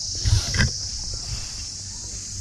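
A steady, high-pitched insect chorus of crickets or cicadas runs throughout. Near the start come two brief low bursts of noise, the louder one about a third of a second in.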